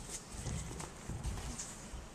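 A few dull, low thumps and shuffles on a stage floor as a person drops down onto it and lies flat. The heaviest thump comes a little past the middle.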